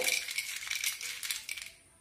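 Roasted legumes rattling and scraping against a steel plate as a hand rubs and mixes them, a dense run of small clicks that stops shortly before the end.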